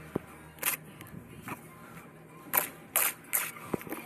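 Steel trowel scraping and knocking against mortar on a spot board and on concrete blocks while buttering them: a string of short, sharp scrapes and clicks, about seven in all, the loudest a little past the middle.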